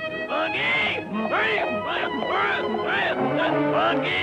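Cartoon burro braying: a quick run of rising-and-falling, wobbling calls over an orchestral score.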